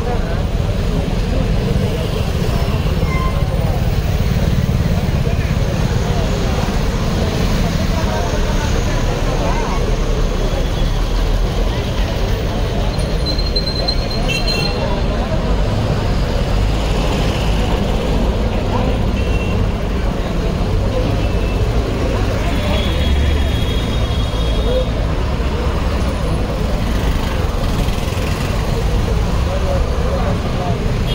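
Busy street traffic, with engines running and a few brief horn toots, under the steady chatter of a large crowd.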